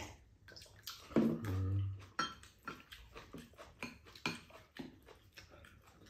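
Close-up eating sounds of two people: slurping soup from a bowl, chewing and lip smacks in a quick irregular series of small wet clicks. A short low-pitched vocal sound comes about a second in.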